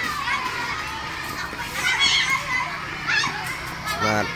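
Schoolchildren playing, many high voices chattering and calling at once and overlapping one another.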